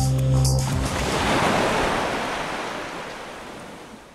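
Background music ends within the first second, leaving a rush of waves and wind on the sea that swells and then fades out gradually.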